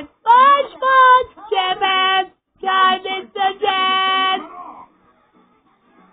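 A high, child-like voice singing a tune in several held and gliding notes, stopping about four and a half seconds in.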